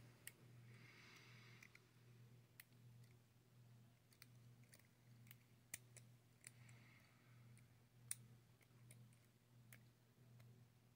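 Faint, irregular light metal clicks of a lock pick working the pins of a brass pin-tumbler mortise cylinder held under a tension tool, as the pins are lifted one at a time without oversetting them. A steady low hum runs underneath.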